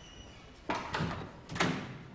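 Two heavy bangs about a second apart, each trailing off in a reverberant tail.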